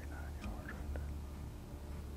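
A man whispering, "He's about 39 yards from here," over a steady low hum.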